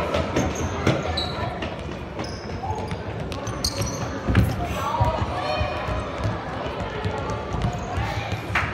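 Football being kicked and bouncing on a sports hall floor during indoor five-a-side play, with sharp thuds, the loudest about four and a half seconds in. Indistinct voices of players and onlookers run throughout.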